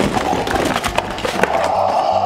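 Large cardboard toy box being pulled apart by hand: cardboard scraping, rubbing and crackling, starting abruptly, as the tray is forced out of its outer box.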